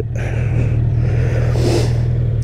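1987 Kawasaki ZL1000's inline-four engine idling steadily with the bike stopped, with a brief hiss near the end.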